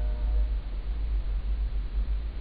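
Low rumble of a train in the background, uneven in level.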